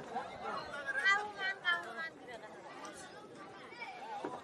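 People talking and chattering, the voices loudest in the first half and quieter after about two seconds.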